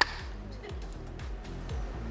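Background music with a steady low bass beat. Right at the start there is one sharp knock from a plastic water bottle being shaken hard to make the supercooled water freeze.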